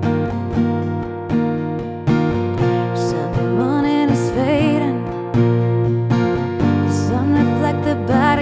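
A woman singing softly over a strummed acoustic guitar, holding a long wavering note about halfway through.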